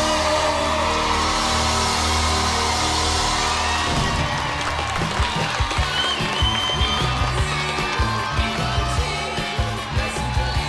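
A pop duet with band ends on a held final note, and about four seconds in the audience breaks into applause and cheering over the closing music.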